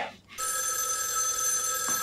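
An old desk telephone's bell starts ringing about a third of a second in and rings steadily.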